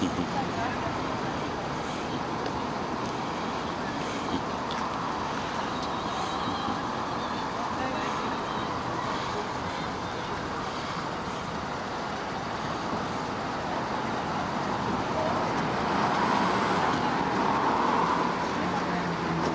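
Steady road traffic noise from passing cars, swelling a little louder near the end, with indistinct voices talking underneath.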